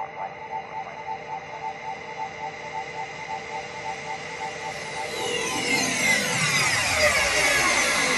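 Psytrance track intro made of electronic synth effects. Soft pulsing synth tones are held steady at first. From about five seconds in, a dense sweep of falling pitches swells louder, building up to the beat.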